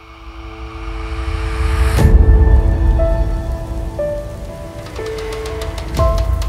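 Cinematic logo sting: a noise swell rising for about two seconds into a sharp hit, then a deep rumble under a few slow, sustained synth notes, with another hit at the very end.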